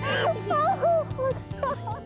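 Excited voices squealing and exclaiming in short wavering cries over background music.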